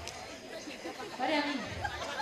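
People talking: a chatter of voices, quieter than the speech around it.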